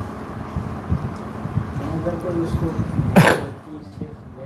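A man clears his throat once, sharply, a little after three seconds in, over a steady low background rumble.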